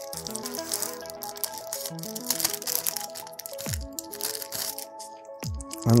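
Chillstep background music with a steady pattern of notes. Over it come short crinkles and clicks from handling wired in-ear earphones and their plastic bag.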